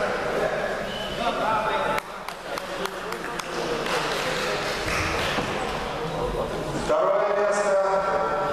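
Indistinct voices echoing in a large sports hall, with a few short sharp knocks or claps about two to three seconds in. A stronger, steadier voice comes in near the end.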